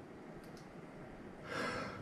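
Quiet room tone, then a short, soft hiss of breath near the end.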